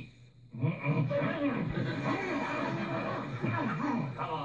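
A man's muffled, wordless yelling through a pool ball lodged in his mouth, mixed with laughter. It starts about half a second in and runs on in overlapping waves.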